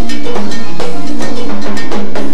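Live Latin dance band (orquesta) playing, with a cowbell on the timbales set struck in a steady rhythm on top of the drums and sustained pitched notes of the band.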